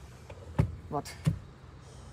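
Mostly quiet car cabin with one short spoken word near the middle and a couple of faint soft thumps.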